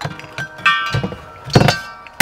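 An empty steel propane cylinder knocking against its compartment as it is pulled out: a soft knock at the start, a ringing metallic clank about two-thirds of a second in, and a louder ringing clank near the end.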